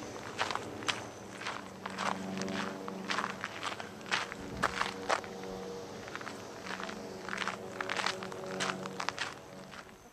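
Footsteps on a dirt trail, a crunching step roughly every half second to second while walking, with a faint steady low hum underneath.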